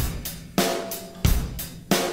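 Drum kit keeping a steady beat, with a hit and cymbal wash about every two-thirds of a second, and an electric guitar sounding over it.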